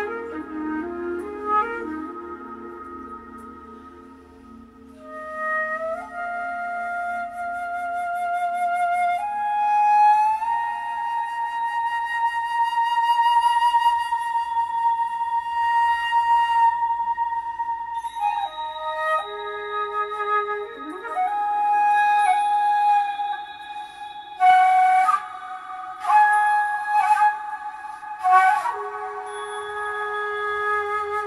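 Concert flute played solo in slow, long held notes with vibrato, one note sustained for several seconds in the middle, and a few sharp, breathy accented notes near the end. A softer, lower accompaniment fades away in the first few seconds.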